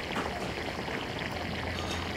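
Banana slices frying in a vat of hot oil, the oil bubbling and sizzling steadily.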